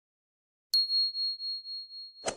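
A notification-bell sound effect: a single bell ding struck about three-quarters of a second in, one pure high tone ringing on with a wavering, slowly fading level.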